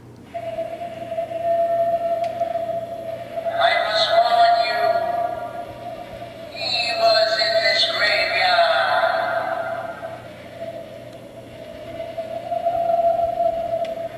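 Animated Halloween prop's built-in speaker playing its eerie sound effects: a steady held tone that starts suddenly, with two louder stretches of a processed, voice-like wail about four and seven seconds in.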